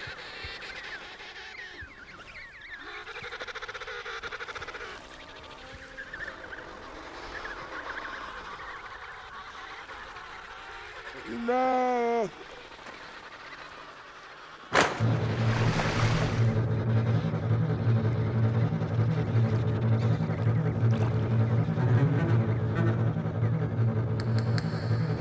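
A Weddell seal gives one short, honking call that rises and falls, about halfway through, over faint background sound. A few seconds later a loud, sustained low musical drone starts suddenly and holds steady.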